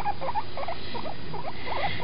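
A guinea pig making a run of short, soft squeaks, about four or five a second.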